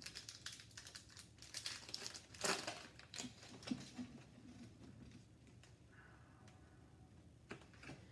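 Plastic hockey-card pack wrapper crinkling and tearing open, with light clicks of cards being handled. It is busiest in the first three seconds, with the loudest rustle about two and a half seconds in, then goes quiet.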